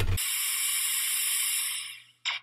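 Edited-in TV static sound effect: a steady hiss that starts abruptly and fades away near the end, the sound of an old CRT television switching off.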